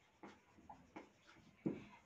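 Marker pen writing on a whiteboard: a run of short, faint scratchy strokes as a word is written out. A louder short sound comes near the end.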